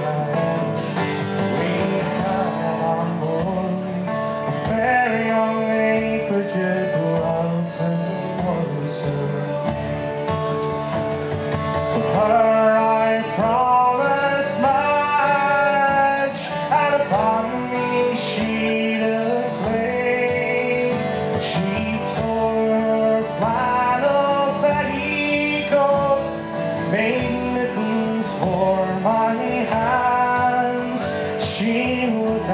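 Live folk music: a man singing a traditional Newfoundland sea song with acoustic guitar strumming.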